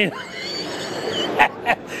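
Background chatter of a crowd in a busy exhibition hall, with two short knocks about a second and a half in.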